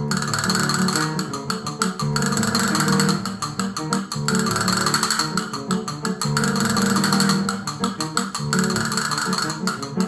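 Concert castanets played in fast, continuous clicks and rolls over an instrumental accompaniment, in phrases of a second or two.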